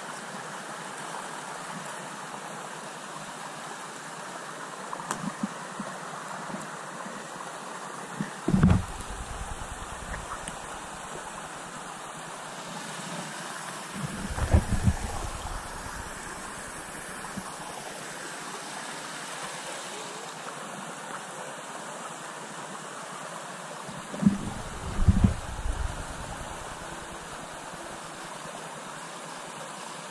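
Steady rush of river water flowing over rocks. A few low bumps on the microphone stand out about 8 seconds in, around 15 seconds and around 25 seconds.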